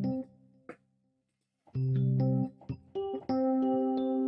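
A MainStage Rhodes electric piano patch, a software emulation of a Rhodes, playing chords. There is a brief silence just after a second in, then the chords resume.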